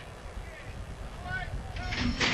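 Quiet racetrack ambience: low wind rumble on the microphone with a few faint, short distant voices calling out.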